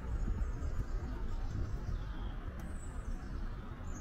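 Outdoor ambience: a steady low rumble with faint, high bird chirps late on.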